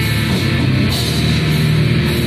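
Crust punk band playing from a cassette demo recording: distorted guitars and bass over a drum kit, loud and dense throughout, with a cymbal crash about halfway through.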